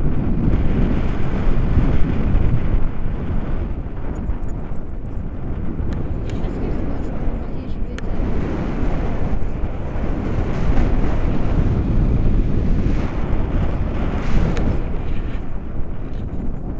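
Wind buffeting a camera microphone in flight under a tandem paraglider: a steady rushing noise, heaviest in the low end, that swells and eases a little.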